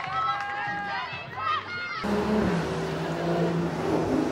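Girls' voices shouting and calling across a hockey pitch, high calls sliding up and down in pitch. About two seconds in, the sound cuts abruptly to players talking close by, lower voices over a general crowd background.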